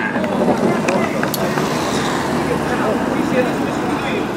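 A team support car driving along the road, its engine and tyre noise steady, over a background murmur of voices.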